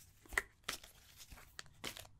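Tarot cards being shuffled in the hands: a few short, sharp snaps and rustles of card stock, fairly quiet.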